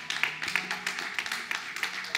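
Scattered clapping from a congregation, irregular and fairly dense, over a soft keyboard pad holding low sustained notes that change chord about half a second in.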